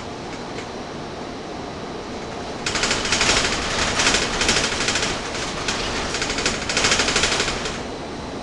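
Gillig Phantom transit bus heard from inside while under way: a steady rumble, then about a third of the way in a loud, rapid rattling of the bus body sets in for about five seconds before easing near the end.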